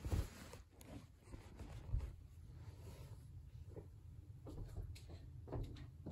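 Very quiet room with a few soft, low thumps and faint clicks and rustles, the clearest thump about two seconds in: handling noise from a camera being moved.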